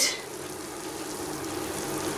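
Rice Krispies in hot melted butter and syrup sizzling steadily in a saucepan as they are stirred with a wooden spoon.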